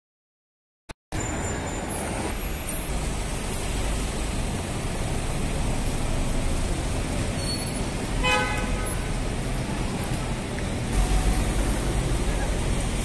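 City street traffic noise, a steady wash of passing vehicles, with a brief car horn toot about eight seconds in.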